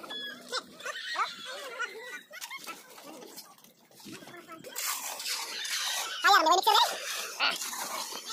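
Several people talking and calling out, with a high wavering cry about six and a half seconds in. From about five seconds in comes a steady noisy scraping of steel shovels working through wet concrete mix.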